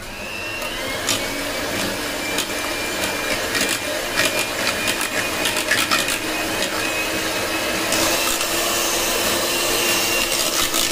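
Electric hand mixer running, its twin beaters whipping cream in a stainless-steel pot. The motor starts up at the beginning and runs steadily, with frequent clicks as the beaters knock against the pot.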